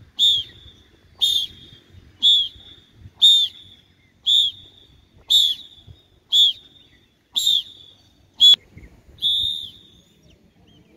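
A trainer's whistle blown in short, warbling blasts about once a second, ten in all, the last one longer: it counts out the pace of a group's exercise repetitions.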